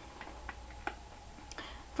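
A few faint, scattered light clicks over a low steady hum: small makeup items in plastic cases being handled as they come out of a makeup bag.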